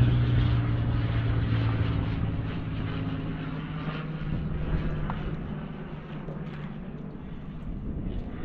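Light seaplane's engine idling with a steady hum that fades out about halfway through, leaving a low rumble of wind and water noise.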